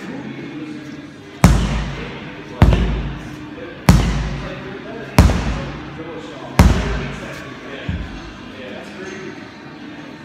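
A sledgehammer slamming down onto a big rubber tyre: five heavy strikes about a second and a bit apart, then a lighter sixth, each echoing briefly in a large hall.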